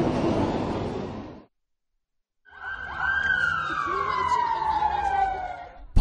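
Background hiss that cuts off about a second and a half in; after a second of silence, a single long tone slides steadily downward in pitch for about three seconds, typical of a broadcast transition sound effect between news stories.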